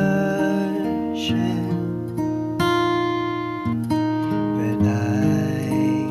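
Acoustic guitar strumming slow sustained chords, the chord changing roughly once a second.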